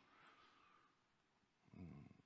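Near silence: a pause in a man's talk. A brief, faint sound of his voice comes near the end.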